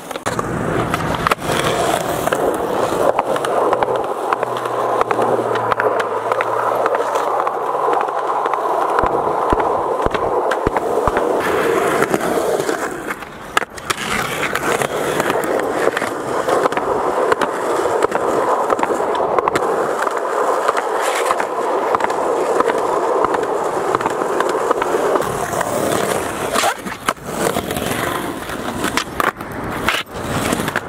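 Skateboard wheels rolling over rough concrete, a loud steady rolling noise. It is broken by a few sharp clicks early on and dips briefly about halfway through and again near the end.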